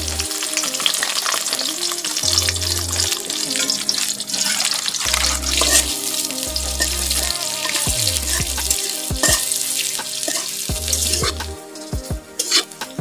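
Sliced onion and garlic sizzling loudly in hot oil in a steel karahi just after being tipped in, stirred with a metal spatula. The sizzle eases near the end.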